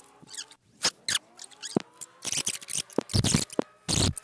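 Fast-forwarded in-car audio, sped up several times over, turning it high-pitched and chattering: quick squeaks and clicks over a car engine whose whine climbs steadily in pitch through the second half, as the car accelerates.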